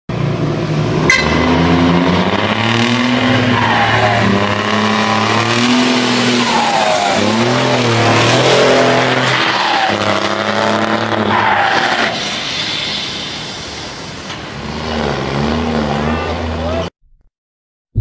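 Heavy truck diesel engine with a straight-through exhaust, revving up and down several times, then cutting off suddenly about a second before the end.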